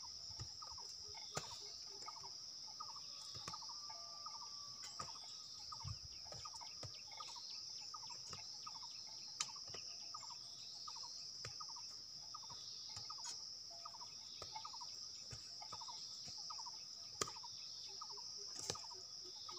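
A steady, high insect buzz, with short chirps repeating every half second or so and a few faint sharp clicks.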